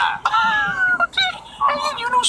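A man's high-pitched, drawn-out shocked cry, under a second long and falling slightly in pitch, followed by more short vocal sounds.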